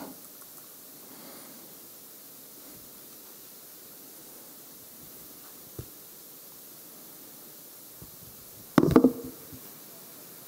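Quiet room tone: a low steady hiss from a handheld microphone's sound system, with a faint tap about six seconds in and a short louder noise near the end.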